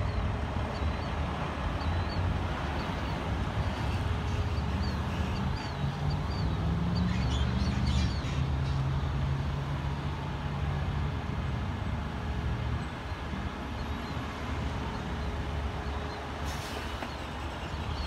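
A vehicle engine running nearby: a steady low rumble with a hum that rises a little about six seconds in and fades after the middle. Faint short high chirps sound over it in the first few seconds.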